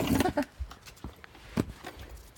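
A few faint, scattered knocks and taps against a quiet background, with the tail of a spoken word at the start.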